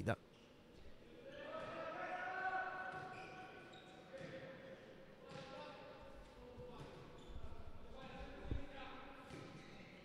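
Faint echoing sound of a large sports hall during a handball match: distant calling voices of players and spectators, with a ball bouncing on the court and a single thud near the end.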